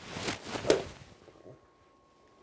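Golf club swishing through the air in a full practice swing, the whoosh peaking sharply just under a second in, then dying away.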